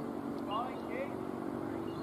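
Distant voices of players calling out across a cricket ground in short rising shouts, over a steady low hum.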